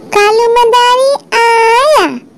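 A child's voice singing a Hindi nursery rhyme: two short sung phrases, the second rising and then sliding down in pitch at its end.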